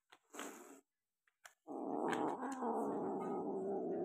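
A short rustle against the nylon backpack about half a second in, then, from just before halfway, a kitten's long, low growl that lasts about three seconds.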